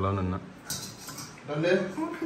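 Metal utensils clinking against a steel bowl in short bursts, with a man's voice speaking at the start and again near the end.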